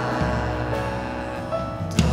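Live worship band playing an instrumental passage with no singing: held chords over a bass line, with a sharp hit near the end as the next bar begins.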